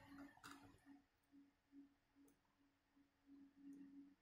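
Near silence, with a few faint clicks from the small plastic joints of a 1:18 scale action figure being posed by hand.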